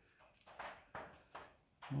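A few faint, soft knocks, about one every half second, against a quiet room, then a man's voice starts near the end.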